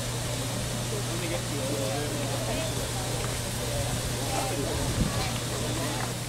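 Indistinct talking over a steady hiss and a low hum, as from a standing steam locomotive simmering at the platform.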